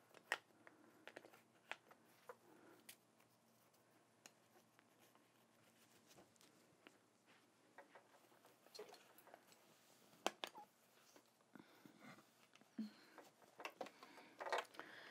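Near silence, broken by faint scattered clicks and soft rustles as the quilt and its frame are handled.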